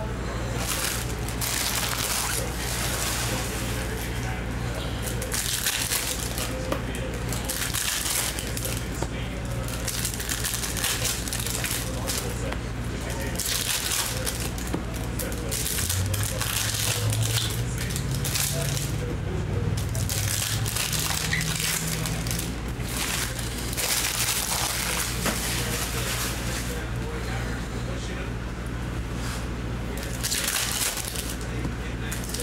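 Foil trading-card pack wrappers crinkling and tearing open in the hands, with slick chrome cards rustling and sliding as they are flipped through, in repeated short bursts over a steady low hum.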